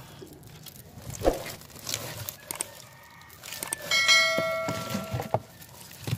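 A bell-like notification chime sounds about four seconds in as the subscribe-button sound effect and rings out over about a second and a half. Before it there are a few scattered knocks and rustles, from the net and fish being handled.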